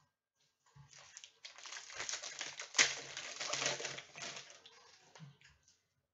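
Foil trading-card pack being torn open and the cards pulled out: a few seconds of crinkling and rustling with small clicks, and one sharp snap of the wrapper near the middle.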